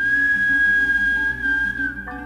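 A loud, high, pure whistle-like tone held for about two seconds over a live band of oud, double bass, drums and organ, dipping slightly in pitch near the end before it stops.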